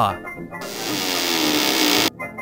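A long creaking of a door being pulled open, a rasping creak that slowly falls in pitch and grows louder before cutting off suddenly at the end.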